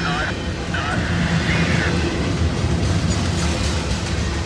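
Freight cars of a passing train (double-stack container cars, then lumber flatcars) rolling by: a loud, steady rumble of wheels on rail, with a few short high squeaks in the first two seconds.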